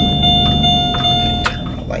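A single steady electronic beep from the car's dashboard, held for about a second and a half before it cuts off, over steady road noise inside the moving car.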